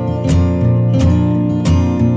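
Background music: a strummed acoustic guitar, with chords struck at a steady pace of about three strums every two seconds.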